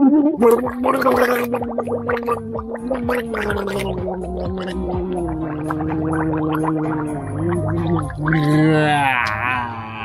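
A man gargling with his head tipped back, holding one long voiced note that sinks slowly in pitch, with a bubbling crackle running through it. Near the end the note wobbles quickly up and down before he breaks off.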